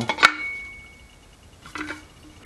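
Aluminum water bottle struck once, a sharp metallic clank followed by a clear ring that fades over about a second.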